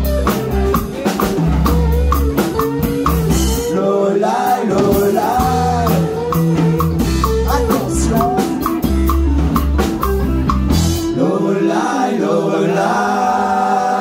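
Live rock band playing: electric guitars, bass and drum kit, with a singer. About eleven seconds in, the drums and bass stop, leaving held chords and voice as the song ends.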